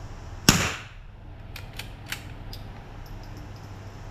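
A single rifle shot about half a second in, sharp and loud with a short echo, followed by a few light clicks.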